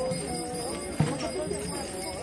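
Church procession music: voices singing over a drum struck about a second in, with a jingling rattle.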